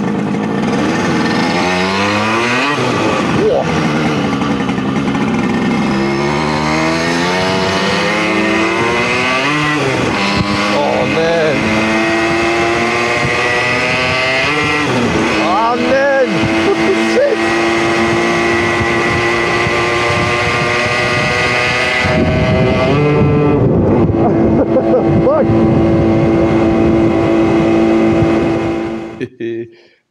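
Yamaha RD50DX 50cc two-stroke single, running on a new HPI 2Ten electronic ignition, revving up through the gears under way. Its pitch climbs and drops at each shift, then holds high and steady for the last dozen seconds before cutting off abruptly. When the power band hits, the clutch lets loose and slips.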